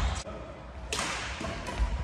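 Badminton rally: a racket strikes the shuttlecock with a sharp crack about a second in, followed by a lighter hit, over the low thuds of players' footfalls on the wooden court.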